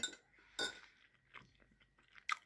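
Faint sounds from a meal table: one short soft knock or scrape about half a second in, then a faint tick, with quiet between them.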